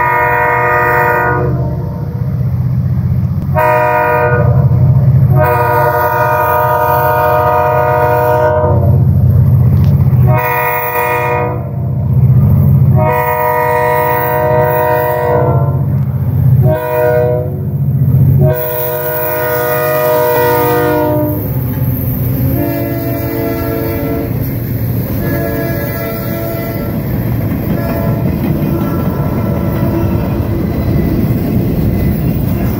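R.J. Corman freight train's diesel locomotive air horn sounding a series of long and short blasts, the warning for the grade crossing. From about two-thirds of the way through the blasts grow fainter and the steady rumble of the locomotives and freight cars rolling past takes over.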